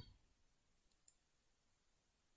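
Near silence, broken by a faint single computer mouse click about a second in.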